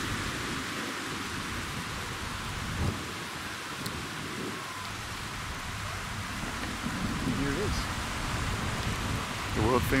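Steady wash of surf breaking on a sandy beach, with wind rumbling on the microphone.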